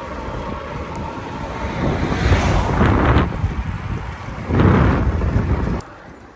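Wind buffeting the microphone of a camera carried on a moving bicycle: a loud, rumbling roar that swells twice, about two seconds in and again near the end, then cuts off abruptly.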